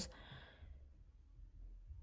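Near silence: a faint breath just as the talking stops, then quiet room tone with a low hum.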